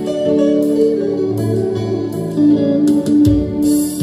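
A group of men singing a hymn together over a plucked guitar accompaniment, in held, steady notes, with a low beat coming in about three seconds in.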